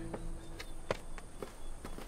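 Footsteps of several people running over forest ground: a quick, uneven series of thuds.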